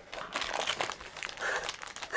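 Small plastic packaging bags crinkling as they are handled, with irregular rustles and light clicks.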